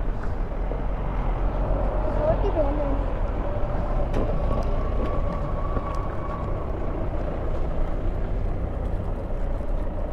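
Steady low rumble of idling vehicle engines in a traffic jam, with faint voices in the background.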